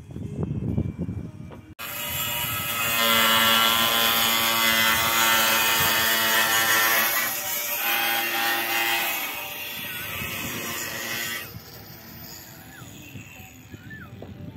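Hand-held power cutter cutting a double-corrugated fibre-cement roof tile, trimming its end or corner: a steady whine with grinding noise that starts suddenly about two seconds in, shifts pitch slightly as it bites, and drops away near the end.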